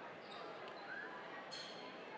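Faint basketball gym ambience: a low murmur of voices in a large hall, with a faint basketball bounce on the hardwood court about one and a half seconds in.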